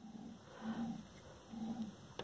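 Wind turbine generator shaft turned by hand, giving a faint low rumbling noise in short strokes about once a second: a little bit of noise, but not much.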